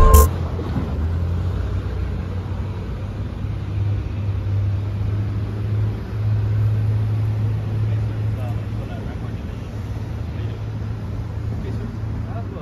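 Music cuts off at the start, leaving a vehicle engine idling nearby as a steady low hum, with faint street noise.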